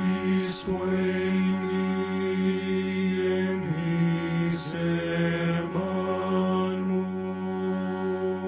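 A man's voice chanting a devotional prayer into a microphone in long, held notes on a nearly steady pitch, shifting pitch briefly twice near the middle, with short breathy hisses about half a second in and again between four and five seconds.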